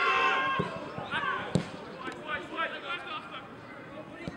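Footballers shouting to each other during play, with a sharp thud of a football being kicked about a second and a half in, louder than the voices, and a smaller knock about half a second in.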